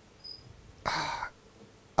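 Mostly quiet, with one short breathy exhale from a person about a second in and a brief faint high tone just before it.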